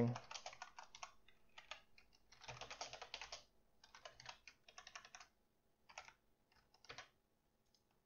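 Computer keyboard typing in uneven bursts of quick keystrokes, with the densest run about two and a half seconds in, stopping about seven seconds in.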